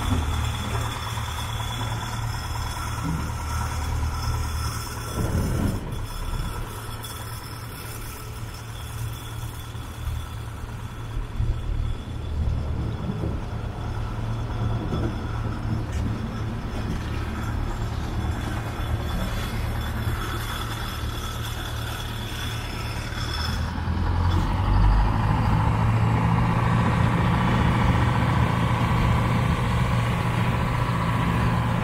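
Small boat's engine running steadily as the boat pushes through thin river ice, with a few brief knocks. About 24 s in the engine gets louder.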